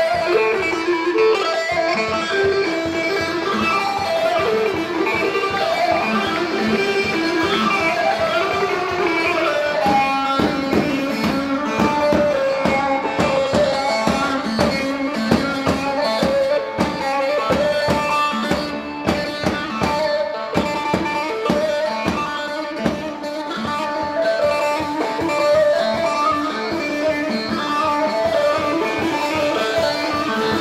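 Live halay dance music from a Turkish saz band: a plucked-string saz melody over a drum beat, which becomes denser and more driving about ten seconds in.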